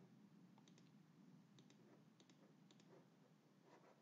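Near silence, with a handful of faint computer mouse clicks scattered through it.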